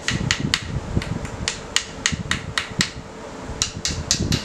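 Aluminium camera tripod with plastic fittings being handled, its parts giving about fifteen sharp, irregular clicks and rattles over a steady low rumble.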